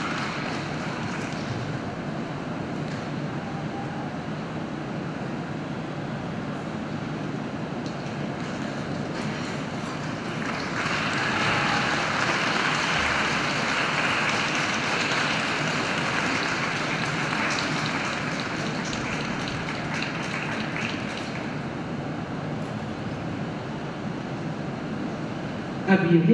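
Audience applauding in an ice arena at the end of a skating programme, swelling louder for about ten seconds in the middle.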